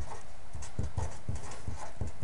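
A pen writing on an index card on a desk: a run of short, irregular taps and scratches.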